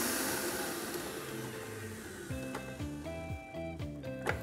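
A stand mixer's motor noise fades away over the first two seconds, and background music takes over, a run of short notes starting a little past the middle.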